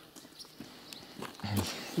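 Faint footsteps crunching on loose gravel as a child walks forward, with a short low murmur of a voice about one and a half seconds in.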